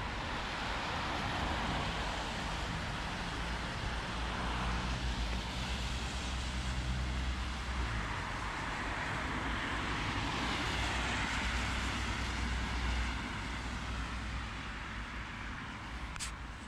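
Road traffic on a wide street: cars passing in a steady noise of tyres and engines, with a deeper rumble through most of the stretch.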